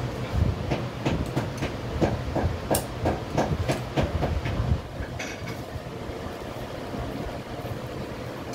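A run of light knocks and clicks, about three a second, from hand work on rhinestone-chain strips at a stone workbench. The knocks stop about five seconds in, leaving a steady background hum.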